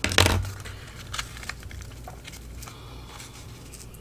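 Book-page paper being folded and creased with a bone folder: a short, loud scrape of paper just after the start, then faint rustling and light taps as the fold is pressed flat by hand.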